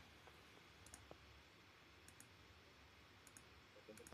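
Near silence with faint computer mouse clicks: three pairs of quick clicks, a little over a second apart.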